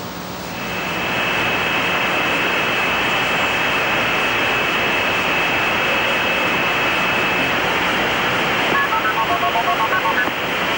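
Hiss of a band-limited radio communications channel, with a thin steady high tone that stops a little past the middle and a faint low hum. Near the end comes a quick string of short two-note beeps that sound like touch-tone dialing.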